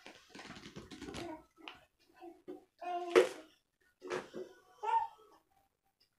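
Playing cards being handled and laid on a cloth-covered table, with a dense patch of card rustling and clicking in the first second and a half. Several short utterances from a high-pitched child's voice follow, the loudest about three seconds in.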